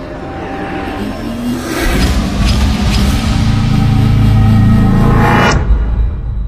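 Background music swelling in a rising build-up that grows steadily louder and then cuts off abruptly near the end.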